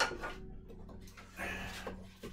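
Handling noises as a wooden box fan filter unit is worked off its pedestal: a sharp knock right at the start, then a brief scraping rustle about a second and a half in.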